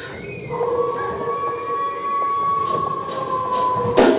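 A long, steady high note held over a lower sustained note in the show's intro music. Near the end come a few short hissy strokes, like cymbal or hi-hat hits.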